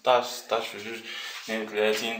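A man's voice speaking in short stretches, with a brief pause near the middle.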